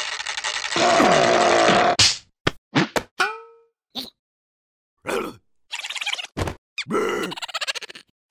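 Cartoon sound effects and characters' wordless vocal noises: a long strained noise lasting about two seconds, then a string of short thwacks and boings with silent gaps between them, one ringing off with a falling pitch.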